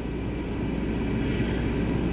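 Steady low hum with even background room noise, no speech.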